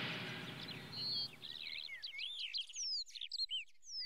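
Music fading out over the first second or so, then birds chirping and singing in quick, short calls that rise and fall in pitch.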